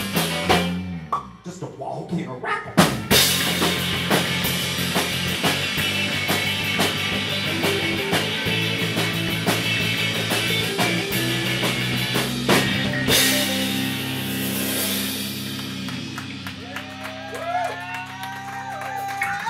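Live rock band playing electric guitars, bass and drum kit. The band thins out briefly about a second in and comes back in with a big hit near three seconds. A cymbal wash follows around thirteen seconds, then long held low notes, with bending guitar notes near the end.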